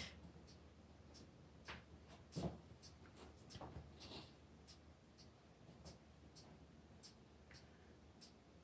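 Near silence with faint, scattered small taps and scratches of a painting tool being handled over a wet acrylic canvas, a few slightly louder ones about two seconds in.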